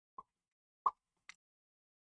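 Three short, light clicks of a plastic model-kit sprue and its small parts being handled; the middle click is the loudest.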